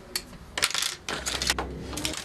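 Hand-tool work on plastic hubcap scrap: a sharp click, then about a second of rough noise mixed with clicks and clatters, and another click near the end.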